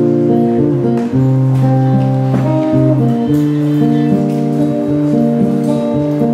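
Solo acoustic guitar playing chords, with no singing; the chords change about once a second.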